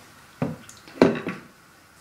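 Two sharp knocks about half a second apart, made by objects being handled and set down on a hard bathroom counter.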